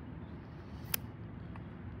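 Flat metal pry tool levering at the glass of a heat-melted phone, with one sharp click about a second in, over a steady low background rumble.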